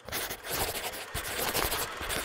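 Pen scratching quickly across paper in a dense run of short scribbling strokes, the sound of a logo being drawn.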